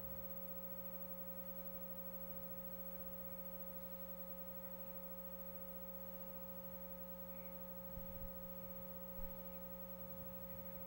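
Faint, steady electrical hum made of several fixed tones, with two or three light knocks near the end.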